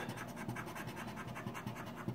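A silver dollar coin's edge scratching the coating off a scratch-off lottery ticket in quick, even back-and-forth strokes.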